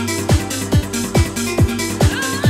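Instrumental stretch of a 1995 Italo dance track: a steady four-on-the-floor kick drum, a little over two beats a second, each beat a falling thud, over sustained synth chords and bass.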